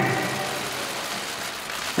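Steady background room noise of a busy indoor venue, a soft even hiss-like din with no distinct events, fading slightly just after the start.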